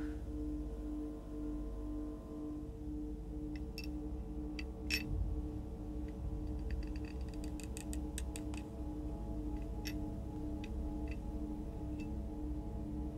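Small clicks and ticks of a key working in the lock of a small box, starting a few seconds in, the loudest about five seconds in, with a quick run of ticks in the middle. Underneath runs a low droning film score with a steady pulsing tone and a deep rumble.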